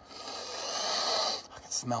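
A person taking one long, deep sniff through the nose, savouring a food smell, lasting a little over a second.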